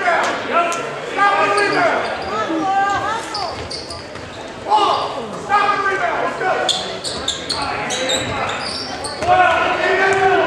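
A basketball bouncing on a gym's hardwood floor during play, with spectators shouting and calling out throughout and short high squeaks mixed in, all echoing in a large gymnasium.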